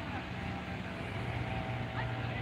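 A steady, low background rumble, such as distant engine or traffic noise.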